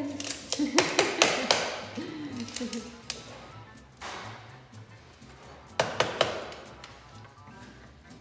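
Hand tools handled on a wooden workbench: a quick run of about four sharp clicks and knocks about a second in, and another run of three near six seconds.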